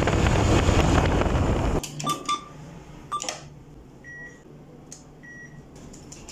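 Motorcycle riding along the road, with engine and wind noise on the microphone, stopping abruptly about two seconds in. Then an ATM beeps four times: two lower beeps followed by two higher ones.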